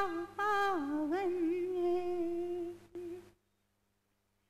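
A woman's voice sings a slow, wordless, hummed-like melodic line in raag Khamaj, holding notes and sliding between them with ornaments. It breaks off a little over three seconds in.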